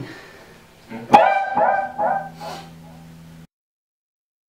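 A man's voice finishing a sentence with the word "play", just after a sharp click. A low steady hum runs under it, and all the sound cuts off abruptly about three and a half seconds in.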